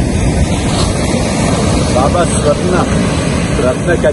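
Wind rumbling heavily on the microphone with surf behind it, and a man's voice singing a devotional song faintly through the noise from about two seconds in.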